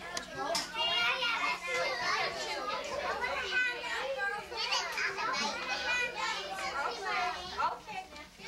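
A roomful of young children chattering and calling out at once, their high voices overlapping.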